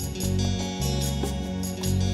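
Live band playing an instrumental passage of a ballad: bass guitar notes, electric and acoustic guitars and keyboards, over a steady light percussion tick, without vocals.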